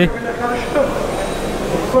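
Indistinct background voices and crowd chatter over a steady hum of noise, echoing in a large hall.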